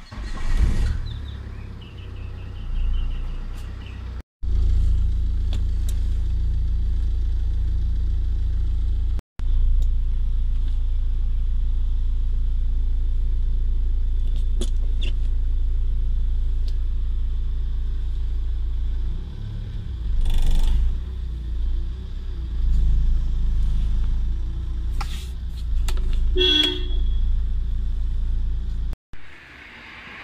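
Car engine running, heard from inside the cabin as a steady low rumble, broken off abruptly a few times by edit cuts. A brief car-horn toot sounds near the end.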